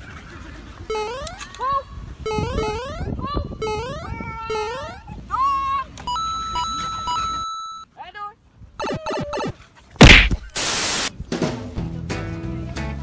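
Edited intro sound effects: a quick series of cartoon-like rising pitched glides, a steady beep about halfway through, then a loud hit and a short burst of hiss near the end, just before music begins.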